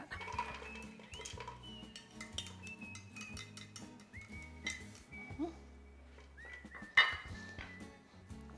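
Sliced onion sliding off a plastic board into a glass bowl, with light clinks and knocks of the board against the bowl, over steady background music. A sharper knock comes near the end.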